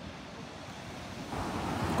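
Small Mediterranean waves breaking on a sandy beach: a steady wash of surf that swells louder in the second half as a wave comes in.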